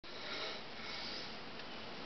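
A steady, even hiss of background room noise with no distinct events.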